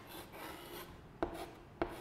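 Chalk writing on a blackboard: scratchy strokes, then two sharp taps of the chalk against the board in the second half.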